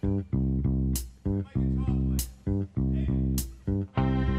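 Instrumental backing music in a soul-pop style: bass guitar and guitar in a repeating, stop-start riff, with a sharp drum hit about every second and a bit.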